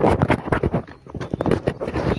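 Handling noise from a phone held close by a child: a rapid, irregular run of knocks and rubs of fingers against the phone and its microphone.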